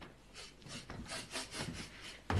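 A quick run of faint rasping or scraping strokes, about five a second, starting about half a second in.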